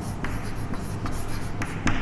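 Chalk writing on a chalkboard: scratchy strokes with a few short, sharp taps as the letters of a word are formed.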